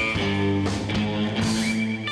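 Live instrumental rock band playing: electric guitar holding sustained notes over a drum kit.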